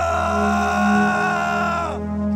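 A man's long anguished cry, held on one high pitch for about two seconds, then breaking off with a downward bend near the end. It sounds over steady background music.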